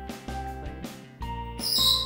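Background music with a short high-pitched chirp near the end, from a red-lored Amazon parrot. The chirp is the loudest sound.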